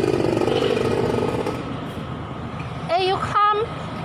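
An engine running steadily that fades away about halfway through, followed by two short spoken exclamations near the end.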